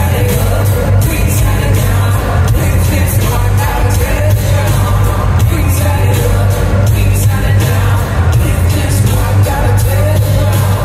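Live band music played loud: a heavy, steady bass line and a regular drum beat, with voices singing over it.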